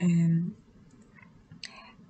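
A man's voice holding a drawn-out 'uh' for about half a second, then a pause broken near the end by a brief faint click.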